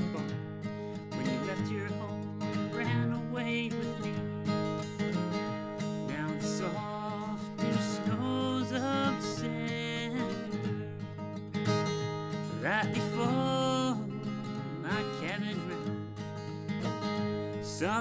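Solo steel-string acoustic guitar played with a pick: an instrumental break of a country-folk tune, a picked melody over a steady bass line and strummed chords.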